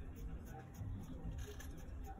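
Scissors cutting through printed fabric on a tabletop: a few faint, short snips with cloth rustling.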